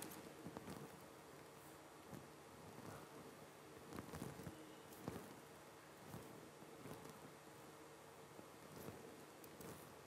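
Near silence: hall room tone with a faint steady hum and a few faint, scattered clicks.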